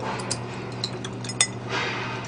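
Chopsticks lightly clicking against a small dish as food is picked up, a few faint taps with the clearest about one and a half seconds in, over a steady low hum.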